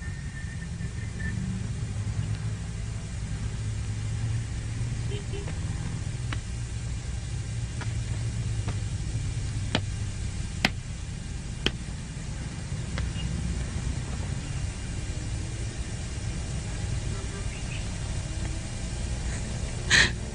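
A steady low rumble, with three sharp clicks around the middle.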